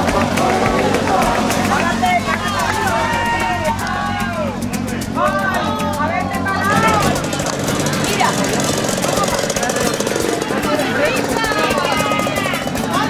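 Motorcycle engines running at low speed as riders pass, a steady low hum under the lively voices and shouts of the watching crowd.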